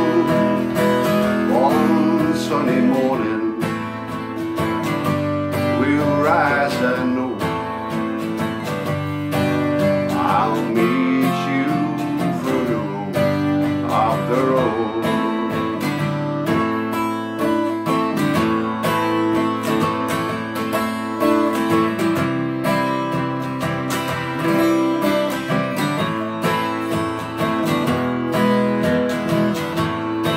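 Twelve-string acoustic guitar playing a steady strummed folk accompaniment. A wavering melody line rides over the chords in the first half, then only the guitar continues.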